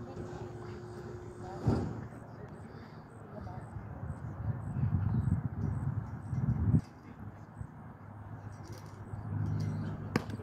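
Indistinct voices and low rumbling noise, with one sharp knock about two seconds in, where a steady hum stops.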